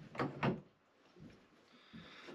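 A steel chisel being put back into a wooden wall rack: two short knocks close together, then a few faint light sounds.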